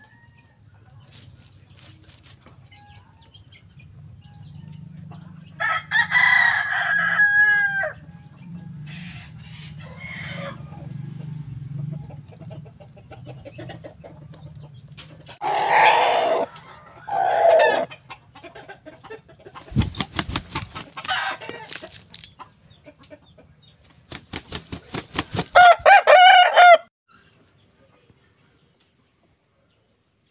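Pakhoy roosters crowing: three long crows about ten seconds apart, each with a wavering, falling ending, the last cut off suddenly. Between the second and third crow comes a run of sharp clicks.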